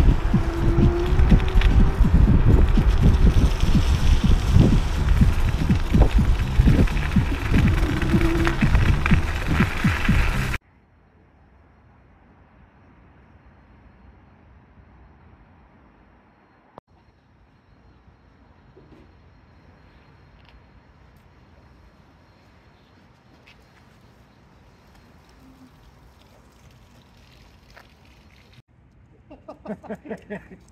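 Wind buffeting the microphone and wheel rumble from an electric scooter ridden along a snowy trail. About ten seconds in this cuts off abruptly to a quiet stretch of faint hiss, with a single sharp tick partway through.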